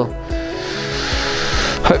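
Soft background music with steady tones and a gentle beat, over a long breathy exhale of about a second and a half as a person stretches out full length on a yoga mat.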